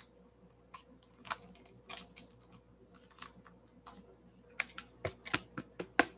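Trading cards and a foil pack wrapper being handled: irregular small clicks and crinkles that begin about a second in and come more often toward the end.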